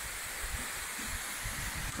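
A tall waterfall pouring down a rock face: a steady, even rush of falling water.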